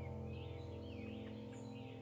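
Soft ambient background music, a held chord slowly fading, with short bird chirps over it.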